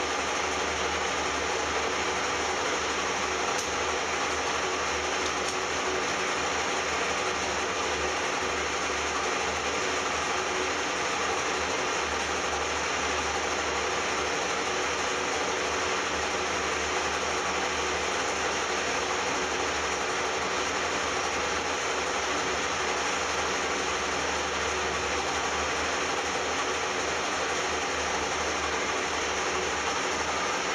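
Metal lathe running with a knurling tool's wheel rolling against a spinning cast aluminium workpiece during a knurling pass; a steady, unbroken mechanical noise with a low hum under it.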